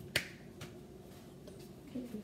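One sharp click just after the start, then a few much fainter ticks.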